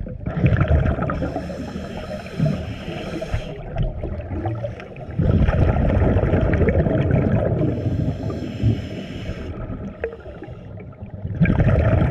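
Scuba diver's exhaled breath bubbling out of the regulator underwater: three long bursts of bubbles, each a few seconds long, with quieter gaps between breaths.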